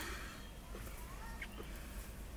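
Faint bird calls: a few short, quiet rising chirps over a low steady background.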